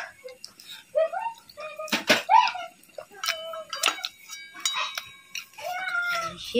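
Eating instant noodles with chopsticks: slurps, wet smacks and clicks of the mouth, the loudest about two seconds in, with short pitched vocal sounds between them.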